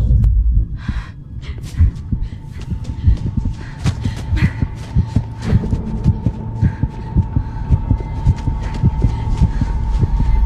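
Suspense film sound design: rapid, irregular deep thumps under constant crackling and rustling, joined about four seconds in by a steady high held tone.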